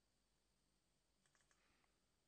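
Near silence, with a quick run of faint computer mouse clicks a little over a second in.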